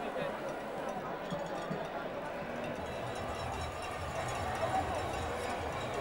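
Crowd of spectators at a cricket ground, many voices chattering at once at a steady level.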